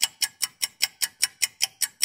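Rapid, evenly spaced ticking, about five sharp ticks a second, like a fast clock.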